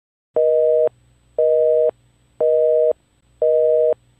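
Telephone busy signal heard in a handset: a steady two-note tone beeping on and off once a second, four beeps starting just under half a second in. The call has not gone through because the line is busy.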